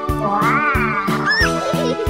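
Upbeat background music with a steady beat. About a third of a second in, a pitched sound effect slides up and down over it for about a second.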